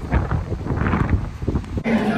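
Wind buffeting a phone's microphone outdoors, an uneven low rumble. It cuts off abruptly just before the end.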